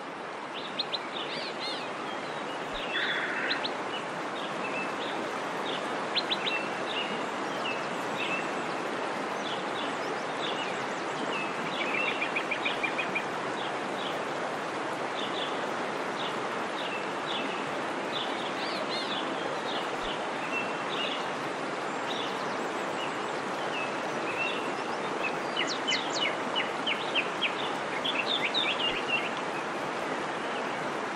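Small birds chirping, many short high notes and quick trills, over a steady background hiss.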